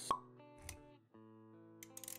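Intro music of held synth-like notes with a sharp pop sound effect right at the start, the loudest thing here, and a softer low thump a little later. The music drops out briefly just after a second, then picks up again.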